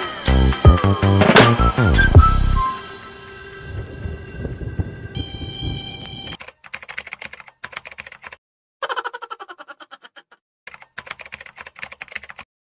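Background music that ends with a falling pitch sweep in the first couple of seconds and dies away. From about six seconds in comes a typewriter-style typing sound effect: rapid key clicks in three short runs with brief gaps, as text types itself on screen.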